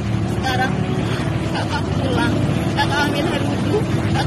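Steady low background rumble with indistinct voices over it.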